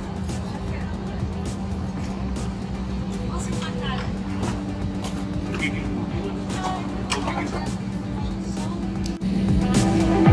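Music over a steady low hum, with faint voices of people talking and scattered light clicks. About nine seconds in the sound cuts abruptly and turns louder.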